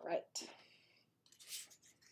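A stiff watercolour-paper swatch card being put down and slid across a tabletop: a couple of short papery scrapes.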